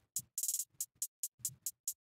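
Programmed drum-machine hi-hats ticking in fast, even sixteenths at 140 BPM, auto-panned from side to side. There is a short burst of rapid hits about half a second in.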